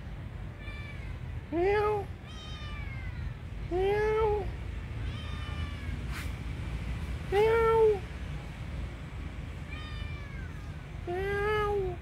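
A kitten crying: four loud meows, each rising then falling in pitch, spaced about three to four seconds apart, with fainter, higher meows in between.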